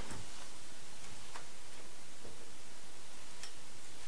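Faint ticking of a wall clock, a few soft ticks over a steady room hiss.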